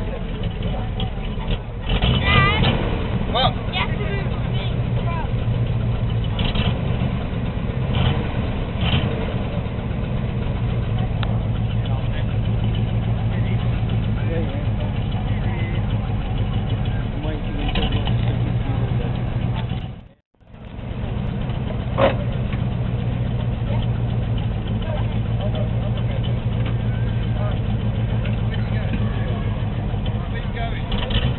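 A vintage military vehicle's engine running steadily at a low pitch, with scattered voices around it. The sound drops out for a moment about twenty seconds in.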